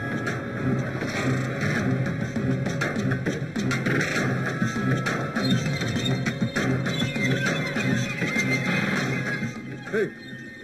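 Film background music with a steady, repeating beat and a prominent bass line.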